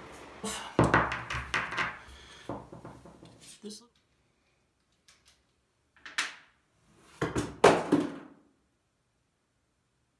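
Sharp metal clicks and knocks from a precision rifle bipod being handled and its legs worked, in a small room. A short gap of dead silence falls midway, then a louder cluster of clicks follows.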